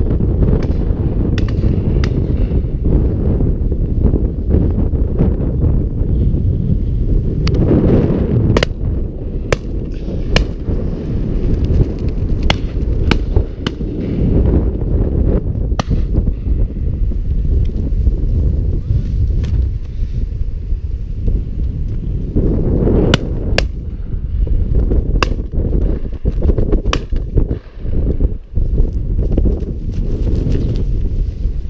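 Wind buffeting the microphone in a steady low rumble, with many scattered sharp clicks and cracks at irregular intervals.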